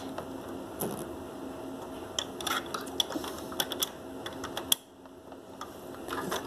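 Plastic Lego pieces clicking and tapping as they are handled and moved about a Lego house. It is a scatter of light, irregular clicks, with a louder click just before five seconds in.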